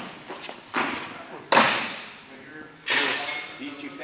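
People talking in a gym. A sudden loud noise about a second and a half in fades over half a second.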